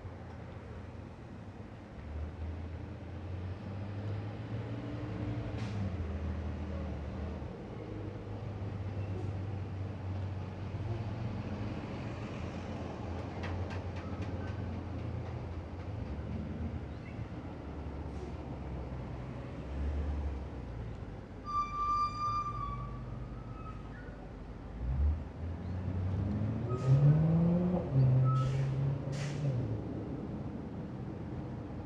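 Street traffic: vehicle engines running and passing. A short high squeal comes a little past the middle. Near the end a vehicle pulls away, its engine pitch rising.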